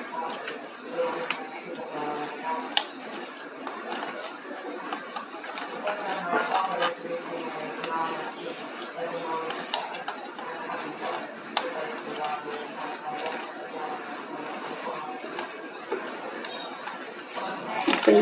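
Faint background voices talking throughout, with scattered small clicks and taps of objects being handled.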